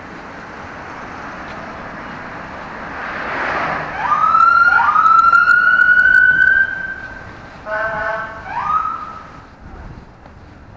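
A siren: two quick rising whoops about four seconds in that go into one held, slowly rising wail lasting about three seconds, then a short horn-like blast and one last brief whoop near the end. It is preceded by a swell of passing-traffic noise.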